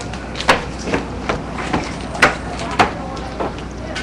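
A series of sharp knocks, about seven at uneven spacing, the loudest about half a second in and just past the two-second mark, over a steady outdoor background with faint voices.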